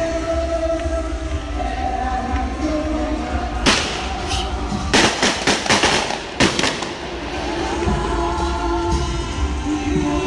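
A religious hymn sung with music, and a string of fireworks bangs in the middle. There is one sharp bang, then a quick run of several more, then two last ones.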